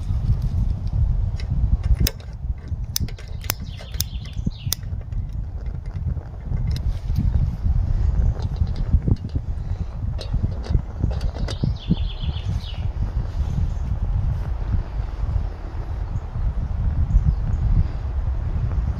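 Light metal clicks and clinks as a folding BCB stove is handled and a metal camping kettle is set on it, over a steady low rumble. The clicks come thickest early on, and a brief run of ringing clinks comes about twelve seconds in.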